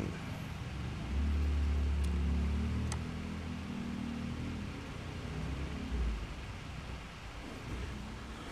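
A low motor rumble with a faint hum above it swells about a second in, holds for a few seconds and fades away, with a smaller swell later on.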